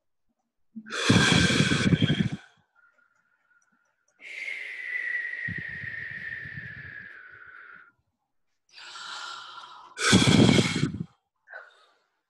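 People blowing breaths of air straight into their computer microphones, the loud blows buffeting the microphone with a low rumble. A long, softer exhale in the middle carries a faint, slowly falling whistle-like pitch, and two more blows follow close together near the end.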